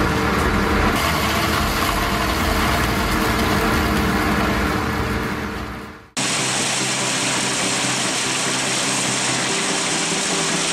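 A Lundberg Tech cutter runs steadily with a hum of several held tones as it pulls in and cuts blue plastic strapping. The sound fades out about six seconds in and is abruptly replaced by a different steady engine sound, the diesel of a timber truck working its log crane.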